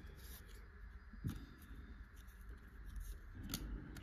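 Faint rustle of baseball trading cards being slid off a stack one at a time, card stock rubbing on card stock, with a few soft flicks, one about a second in and another near the end.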